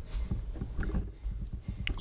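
Irregular scuffs and small knocks of a miner's footsteps and gear as he moves about on the mine floor, over a low steady rumble.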